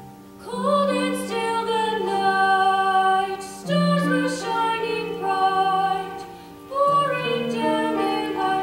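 A young woman singing a slow solo in long held phrases over sustained piano notes. The voice comes in about half a second in and sings three phrases, each about three seconds long.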